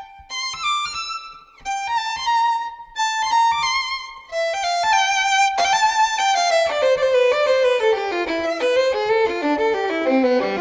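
Solo violin playing a fast étude built on mordents: quick runs of short notes in phrases broken by brief pauses, then from about four seconds in an unbroken run that falls steadily in pitch toward the end.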